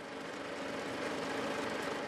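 Fishing boat's engine idling, a steady low hum under an even hiss of sea noise.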